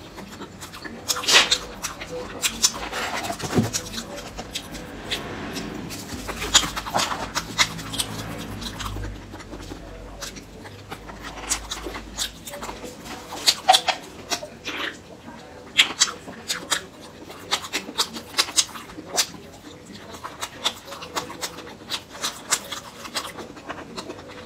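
Close-miked chewing and wet mouth sounds of someone eating, with frequent sharp smacks and clicks.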